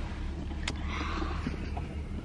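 Steady low rumble of a car's road and engine noise heard from inside the cabin, with a single sharp click a little over half a second in and a brief rustle around the one-second mark.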